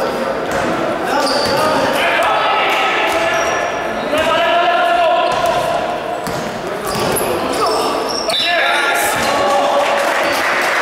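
Basketball bouncing on a wooden gym floor during play, with players' voices calling out, echoing in a large sports hall.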